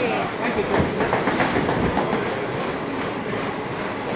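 Boxing padwork: a quick run of sharp slaps and knocks from punches landing on the trainer's pads and from footwork on the ring canvas, over a steady rolling rumble and crowd chatter.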